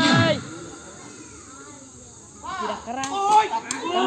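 Spectators and players shouting and calling out. A loud shout trails off just after the start, there is a quieter lull of about two seconds, then several voices rise again with a few sharp knocks among them.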